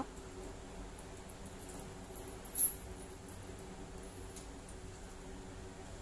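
Faint small clicks and rustles of a metal crochet hook working cotton thread, one sharper click about two and a half seconds in, over a steady low hum.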